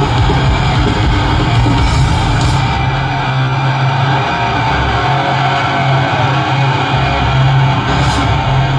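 Death metal band playing live at full volume: heavily distorted electric guitars, bass and drums, recorded from within the crowd. About two and a half seconds in, the highest hiss falls away and the deep low end thins for a few seconds.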